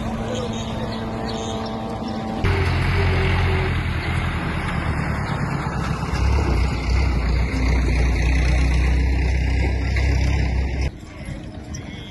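Farm tractor's engine running close by as it pulls a loaded trailer, loud and deep. It starts suddenly a couple of seconds in and cuts off near the end. Before it there is a steadier, quieter engine hum from a passing van.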